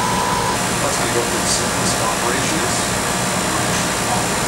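Heat pump outdoor unit running steadily in heating mode with its condenser fan lead disconnected, a constant mechanical hum and hiss. A steady high tone stops about half a second in.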